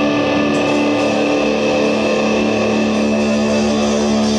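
Live rock band with distorted electric guitar holding sustained, droning notes, a new low note coming in about a second and a half in.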